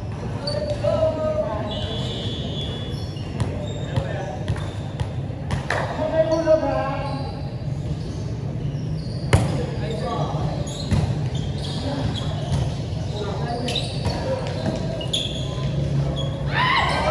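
Players' voices calling out in an echoing gym over a steady low hum, with a volleyball striking sharply about nine seconds in and a few lighter ball thumps.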